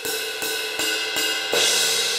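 Sampled Paiste Masters Dark Crash cymbal struck four times, about every 0.4 s, each hit ringing on into the next. The last and loudest hit comes about one and a half seconds in and is left to ring.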